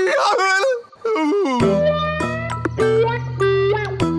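A cartoon frog's wordless cry with a wavering pitch, breaking off about a second in and ending in a short falling glide; then background music sets in with plucked notes over a steady bass line.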